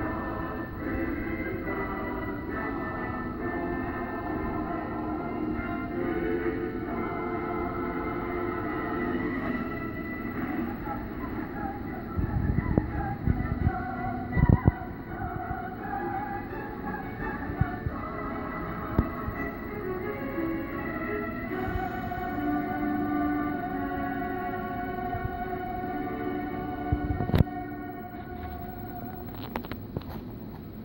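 Film score music with long held tones, played back from a VHS tape through a small television's speaker. A few knocks fall near the middle, and there is a sharp click near the end.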